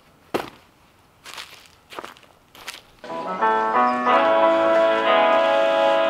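Four footsteps or thumps, the first the sharpest, as a person steps down off an old crawler tractor onto leaf-covered ground. About three seconds in, music with sustained notes starts and takes over.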